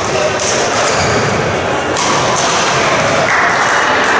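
Badminton rally: sharp hits of rackets on the shuttlecock and footfalls on the court, spaced about half a second to a second apart, over a murmur of voices in a large hall.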